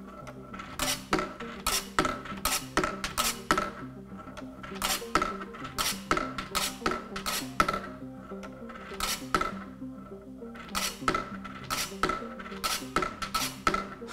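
Steel ball of a 'perpetual motion' desk toy rolling around its metal dish and wire track, rattling and clinking in clusters every few seconds as it drops through the slot, runs down the track and jumps back into the dish. The loop is kept going by a silent hidden electromagnetic pulse at the bottom of the track.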